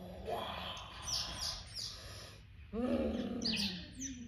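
Birds calling in the garden: quick high chirps that sweep downward, then a louder, lower call in the last second or so.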